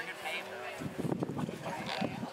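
Background voices of people talking, with some wavering, bleat-like vocal sounds among the chatter.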